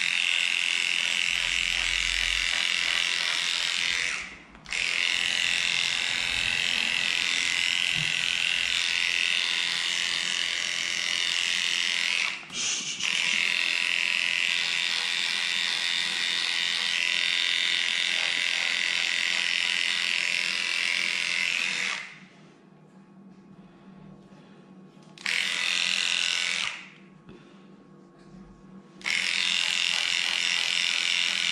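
Electric dog-grooming clipper running steadily as it shaves matted fur off a cocker spaniel's leg. Its whine cuts out briefly twice, stops for a few seconds a little past the two-thirds mark, runs again briefly, then stops and restarts near the end.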